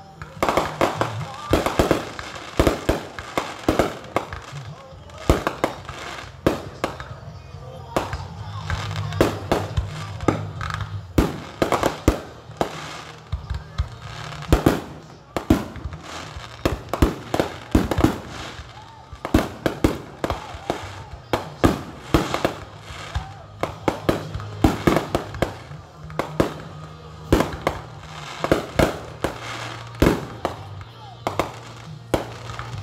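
Fireworks display: aerial shells bursting in a rapid, irregular run of sharp bangs and crackles, several a second, with no let-up.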